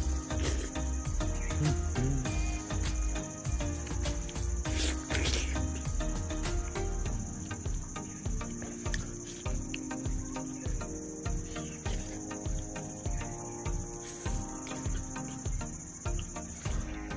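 Insects trilling in an unbroken high-pitched drone.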